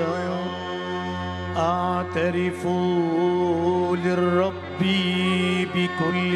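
A solo voice singing a melismatic liturgical hymn in phrases, over a sustained keyboard drone with violin.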